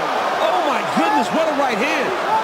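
Men's voices calling out over the steady noise of an arena crowd.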